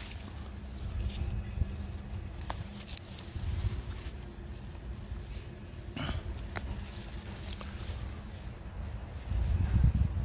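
Tatarian aster shoots picked by hand: a few sharp snaps of stems breaking off and leaves rustling, over a steady low rumble on the microphone that swells near the end.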